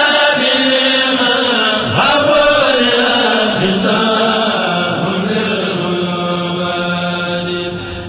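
Arabic religious chanting, a devotional qasida sung in long drawn-out notes. The voice glides down early on, then holds one steady note through the second half before breaking off briefly near the end.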